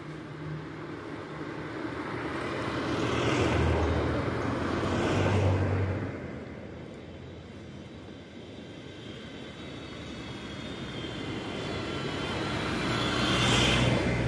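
Road traffic: a passing vehicle's noise swells to a peak about four to five seconds in and fades away by six seconds, then a second vehicle's noise slowly builds toward the end.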